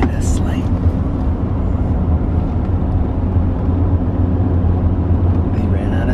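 Steady low road and engine rumble inside the cabin of a moving pickup truck.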